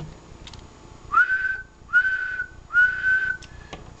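A person whistling three short, steady notes of the same pitch, each rising briefly at its start, into a ham transceiver's microphone. The whistle serves as a test tone to drive the single-sideband transmitter to full power into a dummy load.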